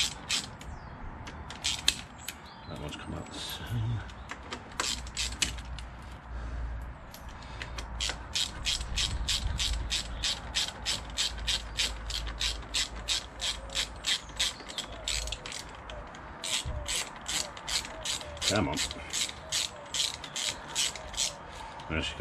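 Hand ratchet clicking as its pawl slips on the return strokes while it backs out the clutch spring bolts on a motorcycle's clutch pressure plate, in long even runs of about three clicks a second.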